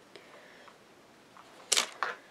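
A rubber stamp on a clear acrylic block is pressed quietly onto card. Near the end there is one short, sharp clack as the block is lifted off and handled.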